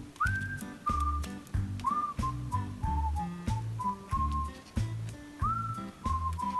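Background music: a whistled melody sliding between notes over a steady bass beat.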